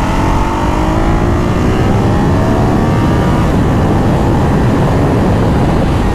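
Ducati Hypermotard 939's twin-cylinder engine under acceleration: its pitch rises for about the first three seconds, then the engine note fades into a steady rush of noise.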